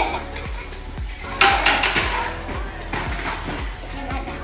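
Background music with a steady beat, with a brief clatter about a second and a half in.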